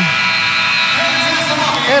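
Arena horn sounding a steady tone at the end of a basketball game, over crowd noise in the arena.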